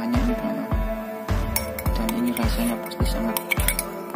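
Background music with a steady beat, and from about a second and a half in a metal spoon clinking against a drinking glass several times.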